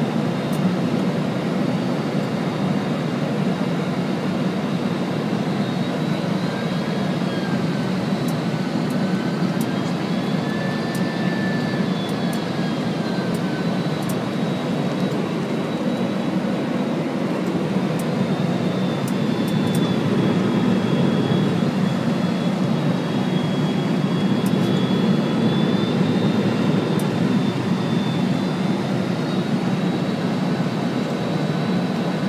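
Steady airliner cockpit noise on final approach: a dense rush of airflow and engine noise, with thin engine whines that drift slowly up and down in pitch.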